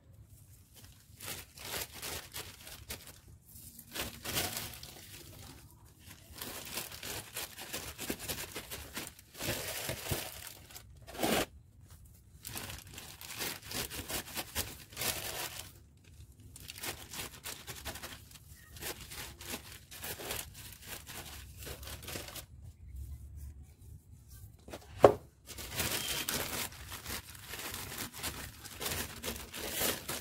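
Hands pressing and working loose potting soil around spider plant bulbs in a planter: irregular rustling and scraping of soil and leaves, coming in bursts with short pauses, and one sharp knock late on.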